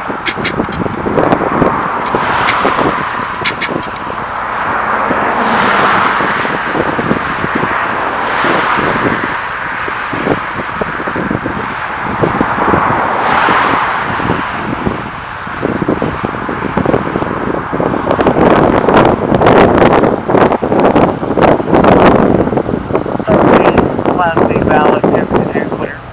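Road traffic: vehicles passing one after another, each swelling and fading. In the last third a louder, rougher crackling rumble takes over.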